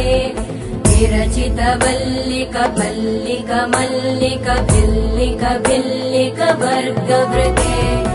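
Indian devotional stotram music: a melody over deep drum beats and sharp percussion strikes.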